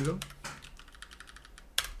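Typing on a computer keyboard: a few scattered keystrokes, then a single sharper, louder click near the end.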